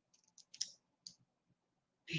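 Near silence with about four faint, short clicks in the first half.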